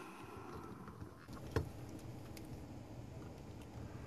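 Quiet hand-handling of a model railcar and a dry-transfer decal sheet: faint rustles and light ticks, with one sharp click about a second and a half in, over a low steady background rumble.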